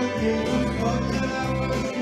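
Country gospel band playing live, with electric guitars, accordion and drums, recorded on a phone.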